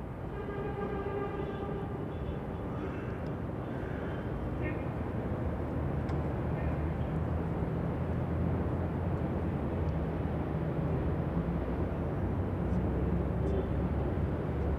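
Outdoor location ambience: a steady low rumble that grows slightly louder, with faint distant voices in the first few seconds.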